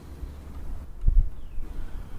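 Wind buffeting the microphone as a steady low rumble, with one heavier low thump about a second in.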